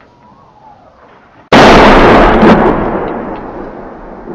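A single close shell explosion about one and a half seconds in, loud enough to overload the microphone, its rumble dying away over the next two seconds.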